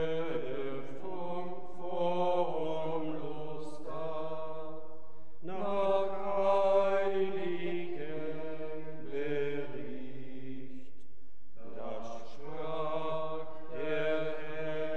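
Sung liturgical chant: a voice holding long, steady notes in several phrases, with short breaks between them, typical of the responsorial psalm sung after the first reading at Mass.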